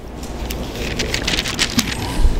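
Paper rustling close to a microphone as Bible pages and notes are handled and turned at a lectern: an uneven, crackling rustle.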